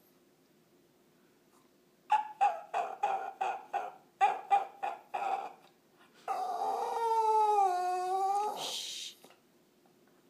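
Small dog whining: a quick run of about a dozen short whimpers, roughly four a second, then one long drawn-out whine whose pitch dips and rises, ending in a brief breathy huff. It is the whining of a dog begging for another dog's bone.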